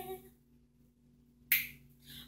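The tail of a sung note fades out, then after about a second of quiet comes a single sharp finger snap with a brief hissy tail.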